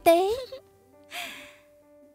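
A woman's spoken word ends, then about a second in comes a short, breathy sigh, over faint background music holding sustained notes.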